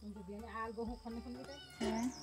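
Domestic cat meowing while being held: a long, wavering call lasting about a second and a half, then a shorter, louder call near the end.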